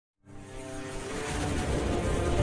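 Intro music sound effect: a swelling drone of several held synth tones over a rushing noise, fading in from silence about a quarter second in and growing steadily louder.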